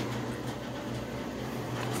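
A steady low hum with a faint, even hiss behind it: background machine noise in a room, with no distinct events.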